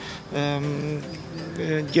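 A man's voice making a drawn-out hesitation sound between words, held on one steady pitch for most of a second.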